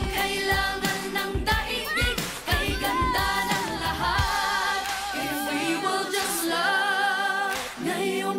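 A pop song with sung vocals over a backing track. The drum beat drops out about halfway through, leaving held, wavering sung notes over lighter accompaniment.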